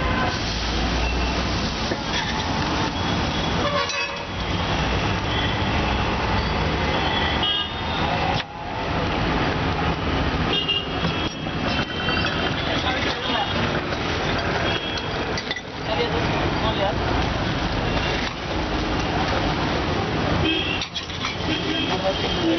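Busy street ambience: steady traffic noise, with vehicle horns tooting now and then and people talking in the background.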